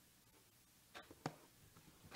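Faint strokes of a knife slicing the tape seal on a cardboard box: two short scrapes about a second in, a quarter second apart.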